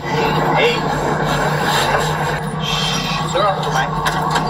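Small aluminium boat's outboard motor running steadily under a wash of wind and water noise, with brief faint voices.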